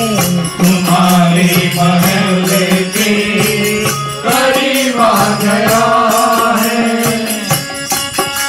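Devotional bhajan: a harmonium playing long held notes with a sung melody, over a steady beat of hand percussion.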